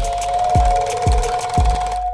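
Intro music: a low drum beat about twice a second under a steady held note.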